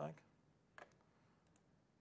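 Near silence with a single short click from a laptop a little under a second in.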